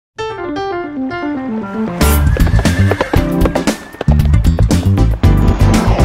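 Intro music: a run of falling notes, then a full band with a heavy beat comes in about two seconds in.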